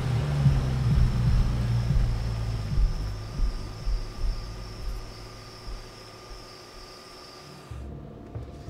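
A car's engine and tyres rumbling as it pulls away, loud at first and fading steadily over several seconds as it recedes down the street.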